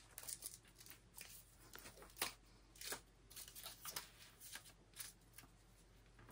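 Faint, irregular rustling and crinkling of an adhesive scratcher sheet being handled and pressed onto a papered wall, with a few sharper crackles.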